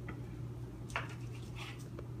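A sharp kitchen knife slicing through a sushi roll onto a wooden cutting board: a few light ticks, the clearest about a second in, over a steady low hum.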